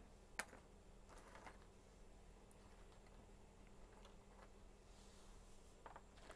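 Near silence: room tone with a faint low hum and one small click about half a second in, then a few fainter ticks.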